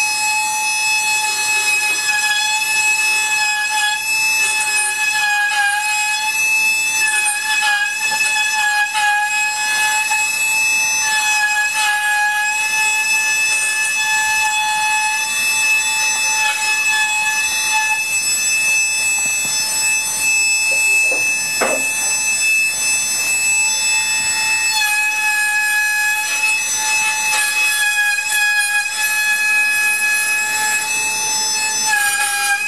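Flexible-shaft die grinder with a small inlay router base running at high speed as it cuts brace notches into the wooden rim of an acoustic guitar body. It makes a steady high-pitched whine that dips slightly in pitch as the cutter bites into the wood.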